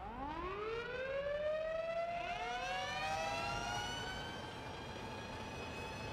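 Fire engine sirens winding up: one wail rises at the start and a second joins about two seconds in, both climbing and then holding a steady high pitch that slowly fades.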